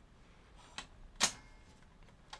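Two plastic clicks from the cassette compartment of an opened Philips VCR-format video recorder as it is pressed back into place: a faint one, then a sharp, louder snap about half a second later.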